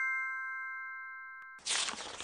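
Logo sound effect: a bright, bell-like chime rings out and slowly fades. About one and a half seconds in, a short whoosh cuts in.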